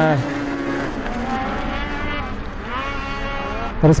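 Racing snowmobile engines running at high revs, their pitch rising and falling with the throttle, with one rising climb in pitch about two and a half seconds in.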